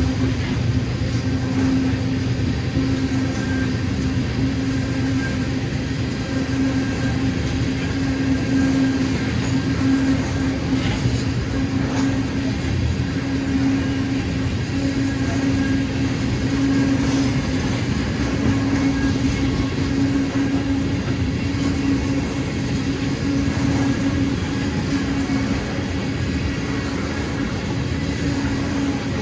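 Loaded ethanol tank-car freight train rolling steadily past, its wheels running on the rails, with a few faint clicks.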